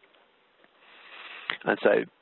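Near silence, then a man's audible breath drawn in through the nose, swelling for about half a second just before he speaks.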